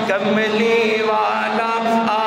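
A man singing a naat, an Urdu/Punjabi devotional song in praise of the Prophet, unaccompanied into a microphone. After a short breath at the start he sings one long melodic phrase of held, wavering notes, over a steady low hum.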